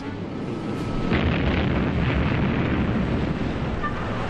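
A torpedo hitting a ship, heard as a deep explosion rumble that sets in about a second in and carries on steadily.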